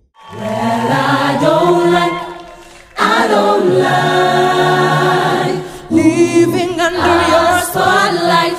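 A choir singing a cappella in held chords, in three phrases with short breaths near 3 s and 6 s, and a wavering run of voices about six seconds in.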